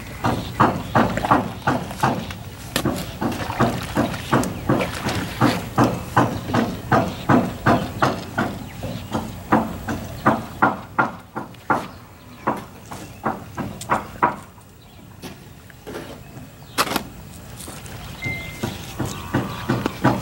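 Mortar hoe chopping and scraping through a wet sand-and-cement rendering mix in a plastic mixing tub, in a steady rhythm of about two to three strokes a second that pauses about two-thirds of the way through.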